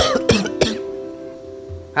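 A man coughs a few times right at the start, over background music whose held notes ring on and slowly fade.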